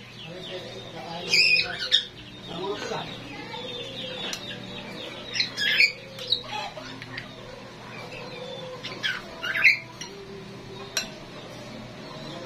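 A bird squawking in short, loud calls, about three times: near 1.5 s, near 5.5 s and near 9.5 s in, with faint voices underneath.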